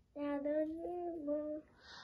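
A child singing a wordless tune, holding one long note for about a second and a half that rises a little in pitch and falls again, with a short breathy hiss near the end.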